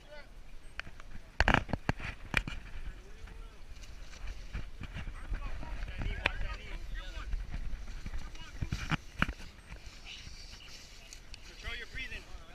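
Close grappling heard through a body-worn camera: handling rumble and scuffing, with several sharp knocks as bodies and gear hit the camera, the loudest about a second and a half in. Men's voices call out in the background.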